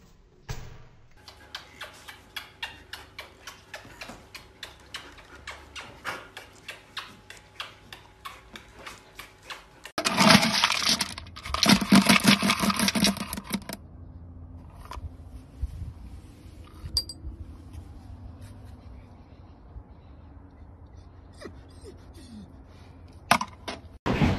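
Dry dog kibble poured from a plastic scoop into a storage bin of kibble: a dense rattling pour lasting about four seconds near the middle, the loudest sound here. Before it comes a long run of light, regular clicks, about three a second.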